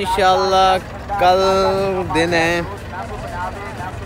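A man's voice calling out in long, drawn-out held syllables, chant-like, with short breaks between the calls: voice only.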